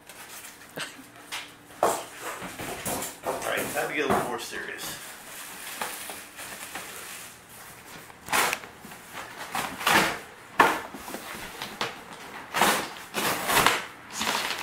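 Packaging being handled: a plastic bag crinkling and cardboard box flaps and styrofoam rubbing and knocking, in irregular bursts that are busiest in the second half.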